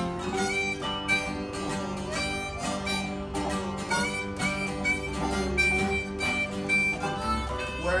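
Instrumental break of an old-time country song: a harmonica plays the lead over strummed acoustic guitar and a resonator guitar. The singing comes back in at the very end.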